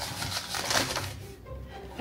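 Folded paper slips rustling and crinkling as a hand rummages through a bowl of them, over music playing in the background.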